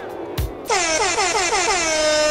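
A music track's beat, then about 0.7 s in a loud air-horn-style sound effect blares in quick stuttering pulses that settle into one long held blast.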